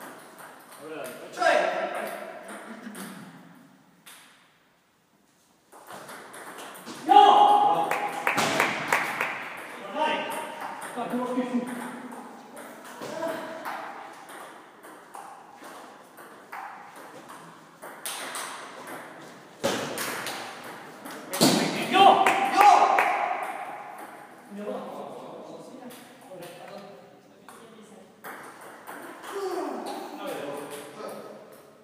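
Table tennis ball clicking back and forth between rackets and table in rallies, with voices calling out loudly between points. The sound cuts out completely for a moment about four seconds in.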